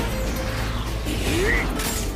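Soundtrack of an action anime clip: music with mechanical sound effects over a steady low drone, and a short voice sound about one and a half seconds in.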